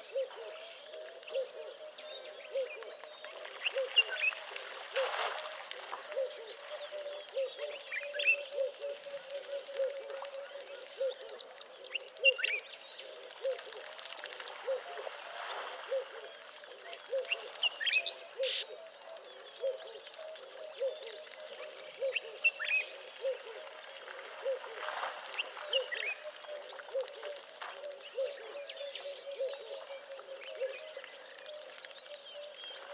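Natural outdoor ambience at a waterhole: a low pulsing animal call repeating about twice a second, a steady high insect-like trill, and scattered short bird chirps.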